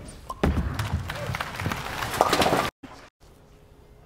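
Bowling ball striking the pins, a thud followed by about two seconds of pins clattering, with crowd shouts near the end; it cuts off suddenly.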